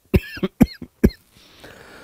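A man coughing three times in short, sharp bursts about half a second apart, followed by a faint breath.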